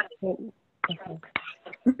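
Only soft, halting speech: a few quiet, broken words over a video call.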